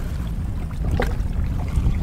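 Wind buffeting the microphone on an open boat: a low, uneven rumble, with a faint tick about a second in.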